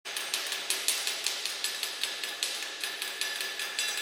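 Rapid, even tapping of a hand tool on a hard surface, about five light strikes a second, over a faint steady high tone.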